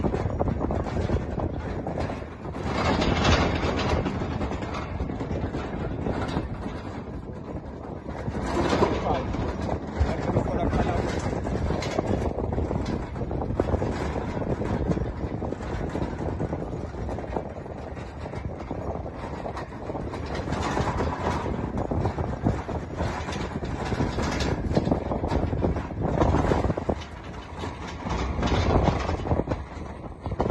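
Vehicle engine and road rumble from a vehicle driving alongside the race, with indistinct voices over it and louder swells now and then.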